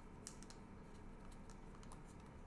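Faint, irregular light clicks and ticks of trading cards and plastic card sleeves being handled.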